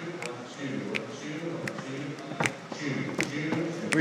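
Indistinct voices talking in a large room, with sharp taps about every three-quarters of a second.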